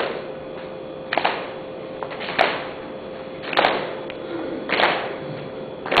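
Hand claps keeping a slow, even beat, about one every 1.2 seconds, each ringing briefly in a reverberant hall, over a faint steady hum.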